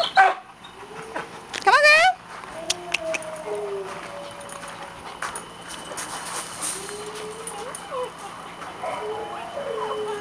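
Dog barking and yelping: a sharp bark right at the start, a louder rising yelp about two seconds in, then softer, drawn-out whimpering calls through the rest.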